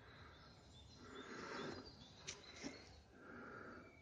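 Near silence: faint outdoor background noise, with a few faint high chirps and a soft click about two seconds in.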